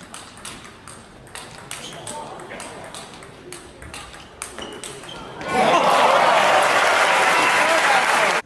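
A fast table tennis rally, the ball clicking off bats and table many times in quick succession. About five and a half seconds in, as the point ends, a crowd breaks into loud cheering and applause.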